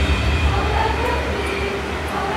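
A group of students singing together in a large hall, over a loud low rumble that comes in at the start.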